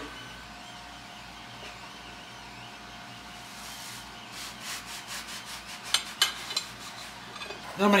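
A kitchen knife sawing through bagels on a ceramic plate: a run of short scraping strokes from about halfway in, with a couple of sharp clicks near the end. Underneath, a faint steady whine from a 3D printer running in the room.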